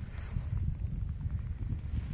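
Wind rumbling and buffeting on the camera microphone, an uneven low rumble.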